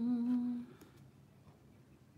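A woman humming a steady held note through closed lips that stops less than a second in, followed by quiet room tone.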